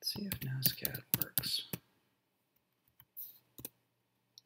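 A man's low voice speaking briefly in the first two seconds, words not made out, then a few short, sharp computer-keyboard key clicks near the end as text is typed.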